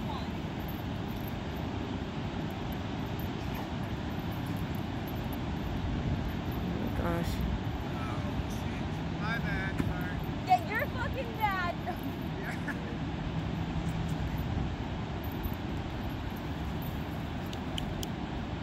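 Steady rush of ocean surf along the beach, with a few brief high-pitched calls a little past the middle.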